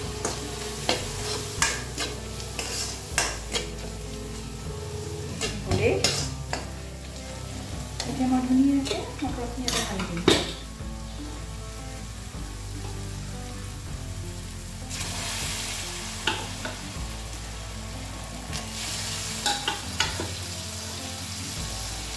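A metal ladle stirring and scraping spiced onion-tomato masala frying in a kadai, the food sizzling in the oil. Sharp clinks of the ladle against the pan come often in the first half, thin out in the middle, and return near the end.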